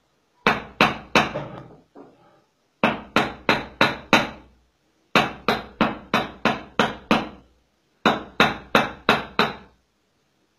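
Goldsmith's hand hammer striking metal on a small anvil block, in four runs of quick blows about three a second, each blow sharp and ringing briefly.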